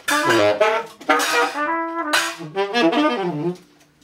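Tenor saxophone and trumpet playing fast, intertwining jazz lines together, loud, then stopping abruptly about three and a half seconds in.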